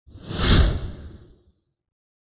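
Whoosh sound effect for a logo intro: one swell of rushing noise that builds, peaks about half a second in and fades away by a second and a half.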